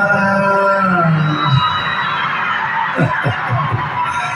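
A large concert crowd cheering and screaming, which swells after a man's long drawn-out vocal note fades about a second and a half in.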